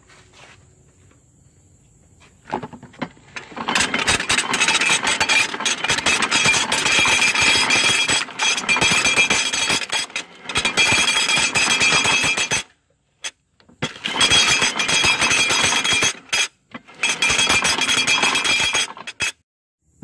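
Pears being crunched up in the grinder of a hand-cranked cider press patented in 1921, with the clatter of its cast-iron cutters and gears. The grinding starts about three and a half seconds in and stops briefly twice in the second half.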